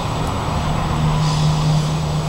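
A steady, low engine-like hum with a constant drone, swelling slightly about a second in.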